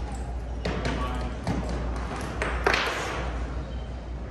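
Clatter of stage gear and cables being handled: several sharp knocks and clanks, the loudest near the end, over muffled background talking and a steady low hum.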